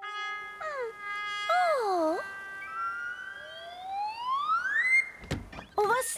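Cartoon soundtrack: held musical notes with wavering, sliding tones, then a long smooth rising whistle-like glide. Two short thuds come near the end.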